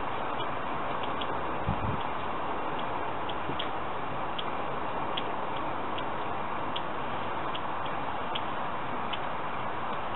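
Steady background hiss with faint, irregular ticks about every half second and one soft low knock about two seconds in.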